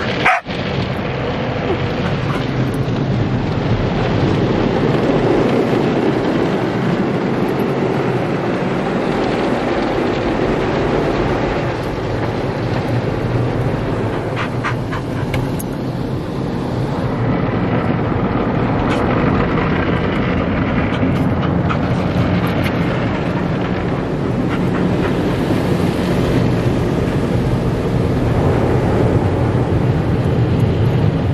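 The steady rush of a drive-thru car wash's water spray and brushes on the car, heard from inside the cabin, with an Australian cattle dog (blue heeler) barking at it now and then. There is a brief knock right at the start.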